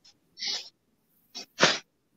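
Three short breathy vocal bursts from a person: a soft one, a brief one, then the loudest about one and a half seconds in.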